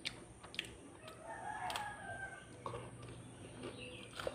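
A rooster crowing once, faintly, starting about a second in and lasting over a second, with a few soft clicks before and after it.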